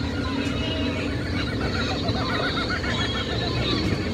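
Monkey calls, a quick run of repeated rising-and-falling chattering hoots in the middle, over the steady low rumble of the moving ride jeep.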